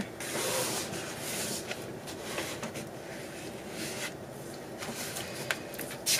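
Fingers rubbing and pressing paper flat onto a junk journal page: soft, irregular scuffing and rustling over a faint hiss.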